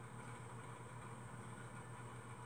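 Faint, steady low hum with a light hiss: the room tone or noise floor of the recording, with no other sound.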